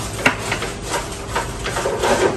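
Cutlery and crockery clinking at a dining table: a few light clicks and knocks, the sharpest about a quarter of a second in.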